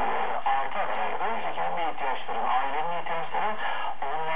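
A voice from a long-distance medium-wave broadcast of TRT 1 Radyo Bir on 954 kHz, heard through the loudspeaker of a Sony ICF-SW7600GR receiver. The sound is cut off above about 4 kHz, narrow and tinny as AM reception is.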